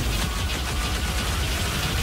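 A loud, rapid mechanical rattling over a deep rumble, a trailer sound effect.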